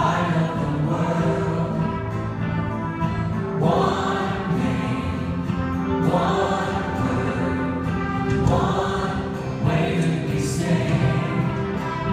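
Church choir and lead singers singing a gospel worship song with live band accompaniment, in sustained phrases that rise anew every couple of seconds.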